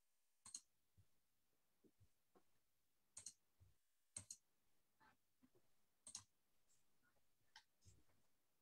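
Faint, sparse clicking at a computer over near silence: single sharp clicks every second or two, with a quick double click about four seconds in.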